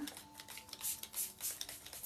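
A hand-trigger spray bottle spritzing water onto bare wood, as a run of short hisses, over faint background music.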